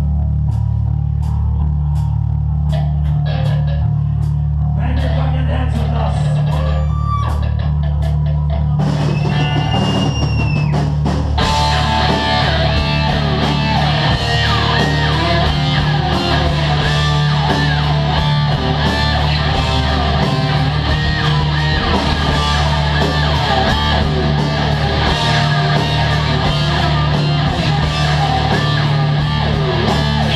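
Heavy metal band playing live, picked up close to a guitar. Low sustained notes with sparse drum hits open the song, and the full band comes in at full loudness about eleven seconds in.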